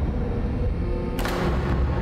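Dramatic background score: a deep low drone with held tones, and a sudden sweeping hit about a second in.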